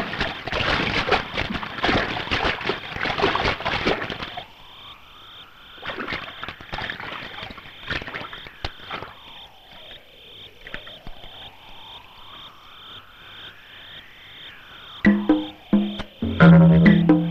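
Night ambience of frogs croaking densely for about the first four seconds. It then thins to a steady, evenly spaced insect chirp about twice a second, under a slow tone that falls and then rises again. Music comes in just before the end.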